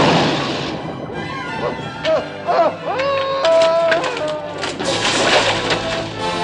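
A blast at the start dies away into orchestral film music with sliding, falling notes, then a loud splash about five seconds in as wreckage hits the water.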